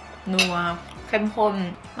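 A metal spoon set down on a plate with a single clink about half a second in, alongside a woman talking.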